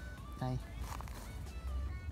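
Soft background music: a simple melody of short held notes at changing pitches, over a low rumble. A man says one short word about half a second in.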